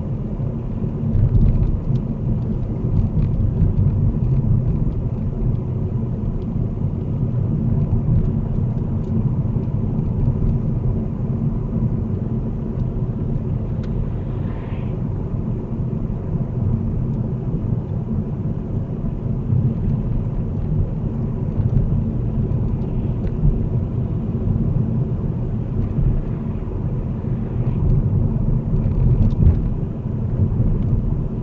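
Steady low rumble of road and engine noise inside a car cruising at about 28 mph, picked up by the windscreen dashcam's microphone.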